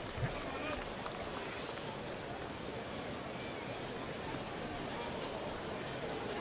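Ballpark crowd ambience: a steady murmur of fans talking in the stands, with a few faint ticks.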